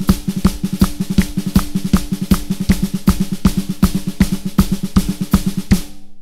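Snare drum played with a fast, steady run of double strokes, accents falling at regular spacing, the drum ringing with each stroke. A bass drum and hi-hat foot pattern keeps time underneath.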